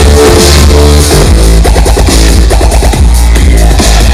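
Live electronic dance music played very loud over a festival sound system, with a heavy, steady bass under a pitched synth line that bends and repeats.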